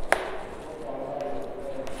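Chalk writing on a blackboard: a sharp tap of the chalk against the board just after the start, then light chalk strokes and a fainter tap near the end.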